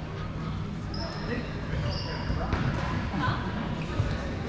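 Dodgeballs bouncing and thudding on an indoor court, with players' indistinct voices echoing in a large hall. Two short high squeaks come about one and two seconds in, and a few sharp knocks follow in the second half.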